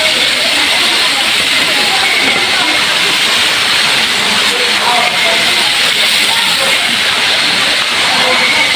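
A loud, steady hiss that does not change, with faint, indistinct voices now and then.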